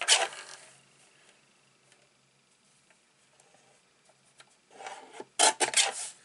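Tonic paper trimmer's sliding blade cutting card stock: a brief rasp at the start, a quiet stretch, then several louder rasping strokes in the last second or so.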